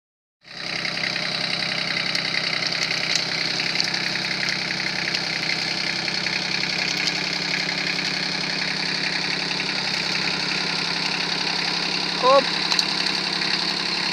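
Kubota B1600 compact tractor's three-cylinder diesel engine running at a steady speed as the tractor drives forward.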